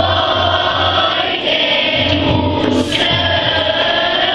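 Children's choir of boys and girls singing a hymn together.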